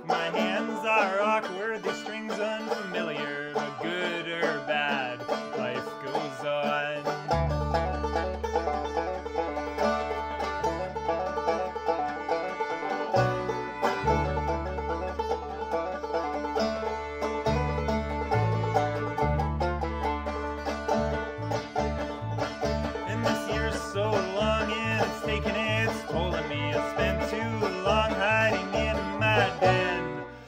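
Acoustic folk string band playing an instrumental: clawhammer banjo and fiddle. An upright bass comes in about a quarter of the way through with long low notes, then settles into a steady beat of short notes.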